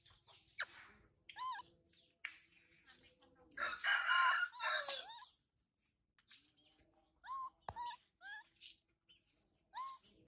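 A rooster crows once, the loudest sound, for about a second and a half near the middle, with short high calls before it and again later in twos and threes.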